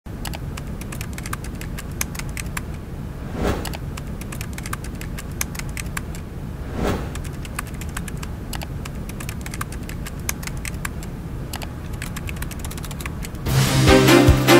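Typing sound effect: a rapid, irregular run of key clicks as text is typed out on screen, with two brief louder swishes about three and a half and seven seconds in. Theme music starts just before the end.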